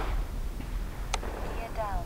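Steady, distant whoosh of a 120 mm electric ducted fan model jet in flight, with a low rumble under it. A single sharp click comes about a second in.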